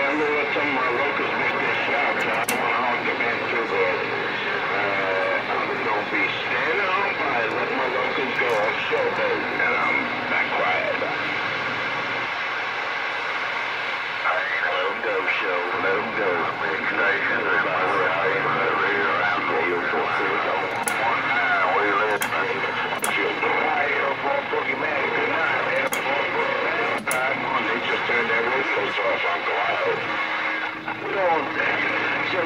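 Voices heard over a Galaxy CB radio's speaker, steady static with far-off stations talking through it, too unclear to make out.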